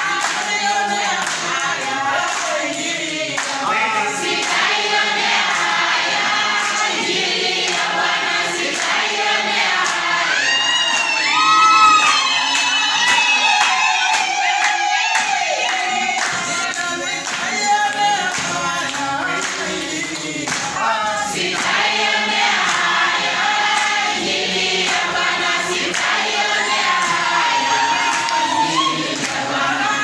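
A congregation singing a hymn together in unison, with hand clapping keeping the beat. About ten seconds in, a high wavering cry rises above the singing and is the loudest moment.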